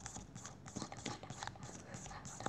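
Faint, irregular light taps and clicks, several a second, of a finger or stylus striking a tablet touchscreen while scribbling with the drawing tool.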